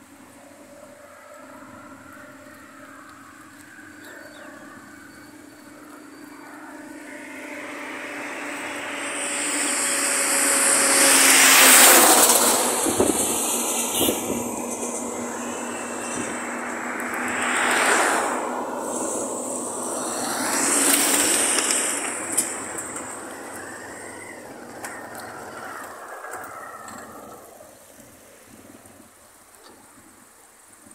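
A line of pickup trucks driving slowly past one after another, their engines and tyre noise on the road swelling and fading as each goes by. It is loudest about twelve seconds in, then swells twice more a few seconds apart.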